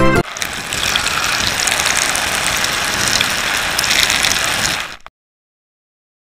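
Water splashing and churning around a camera held at the surface of a swimming pool, a dense hiss with many small crackles. It cuts off suddenly about five seconds in.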